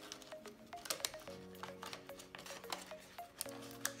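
Soft background music of sustained chords, changing about a second in and again near the end, over scattered small clicks and crinkles of hands handling a thin plastic band cut from a PET bottle around an orchid's plastic pot.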